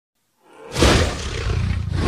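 A creature-roar sound effect for an animated dragon. It starts suddenly a little under a second in, is loudest at the onset, then carries on with a deep rumble.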